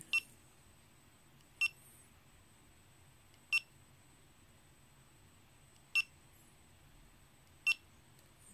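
GoPro HERO3+ camera beeping five times, a short, high beep at each press of its front mode button as it steps through the menu screens. The beeps come at uneven intervals, one to two and a half seconds apart.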